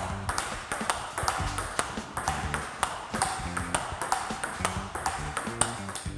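Table tennis rally: a ball clicking off the bat and the table in a quick, steady run of sharp hits, several a second.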